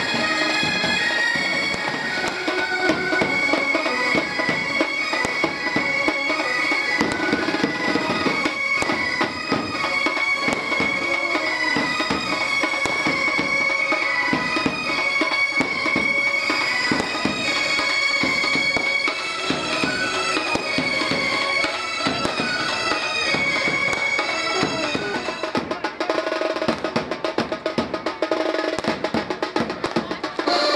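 Indian wedding brass band playing a loud reedy melody on saxophone and brass over steady drumming. Near the end the melody drops away and the drums carry on alone.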